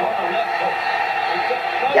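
Boxing fight broadcast audio: a male commentator speaking over a steady background din.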